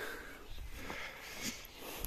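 Faint rustling of grass and shrub branches brushing against someone pushing through them, with a light tick or two near the middle.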